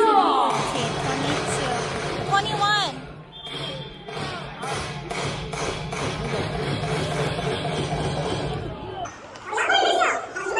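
Baseball stadium din: voices from the crowd and loudspeakers mixed with music, with a steady low hum underneath. It dips briefly about three seconds in and again just before the end.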